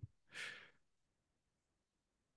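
A single short exhale or sigh picked up by a call participant's microphone, about half a second long, followed by near silence.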